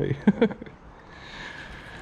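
A man laughs briefly, then a faint steady hiss for about a second.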